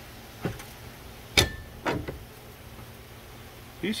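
Steel pry bar levering against a front drive shaft that is rusted and seized into the transfer case, giving a few short metallic knocks, the loudest about a second and a half in with a brief ring.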